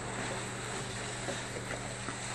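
Steady hum with a broad hiss, like a household fan or air handler running, with a few faint light taps and scuffs.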